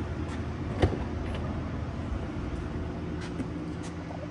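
Steady mechanical hum of a parking garage, with one sharp click about a second in as the Tesla Model 3's flush door handle is pressed and the door unlatches, followed by a few faint knocks as someone gets into the car.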